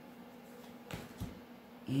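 Quiet handling of a tarot deck as a card is drawn off the top, with a short soft click about a second in, over a faint steady hum.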